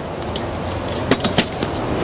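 A folding metal camp chair being moved across paving, its legs scraping, with two sharp knocks a little past a second in as it is set down.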